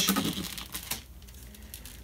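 Plastic lure packaging crinkling and clicking under the fingers as it is worked open: a scatter of light ticks, busier in the first second, then fainter.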